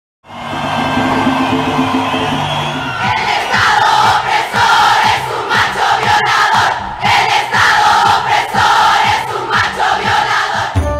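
A large protest crowd chanting in unison; about three seconds in, the chant falls into a steady rhythm with a beat about two to three times a second.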